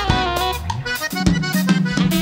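Live band playing an instrumental passage: drum kit hits in a steady beat, sustained electric bass notes and guitars, with a lead melody line held on top.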